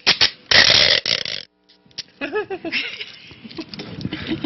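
Adhesive tape stripped off the roll in one loud rasping pull lasting about a second, with a shorter tear just before it. A brief vocal sound follows near the middle.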